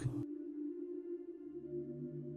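Soft ambient background music of held, sustained tones, with a lower note coming in about halfway through.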